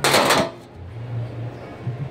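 A magnetic induction heater clacks and scrapes against the underside of a stainless steel chafing dish pan as it is pressed on by hand and the magnets grab the steel. It is one loud, noisy burst about half a second long at the start.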